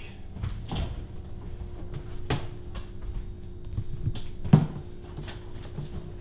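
Refrigerator door opened and containers handled inside it: a few scattered knocks and clunks, the loudest about four and a half seconds in.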